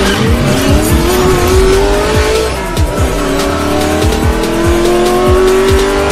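Intro sound effect of a race car engine accelerating hard, its pitch climbing, dropping at a gear shift a little under three seconds in, then climbing again, over a fast electronic beat.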